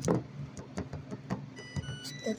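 Handling noise of a phone's microphone being moved against clothing and a plush toy: a loud bump just after the start, then scattered rubs and knocks over a steady low hum.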